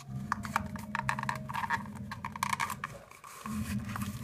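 Cardboard paper-towel roll wrapped in glued decorative paper being handled by hand, its freshly cut strips crackling and rustling in a quick run of small clicks that stops about three seconds in, over a steady low hum.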